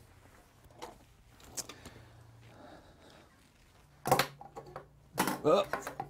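Quiet handling sounds: a couple of faint ticks, then a sharp knock about four seconds in and a few smaller clicks as a small circuit card, the Macintosh Portable's modem card, is set down against a wooden tabletop.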